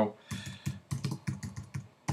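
Typing on a computer keyboard: a quick, uneven run of key clicks as a short two-word phrase is typed.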